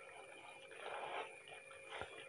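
Faint stirring of a thick, oily date pickle with a wooden spatula in a non-stick pan, a little louder about a second in, over a faint steady hum.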